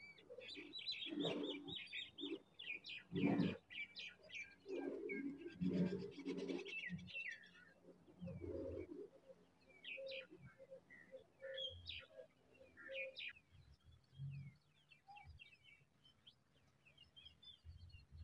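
Birds chirping with many short, quick high calls throughout, with a run of lower, evenly spaced notes in the middle. Several louder dull sounds come in the first half, the loudest about three seconds in.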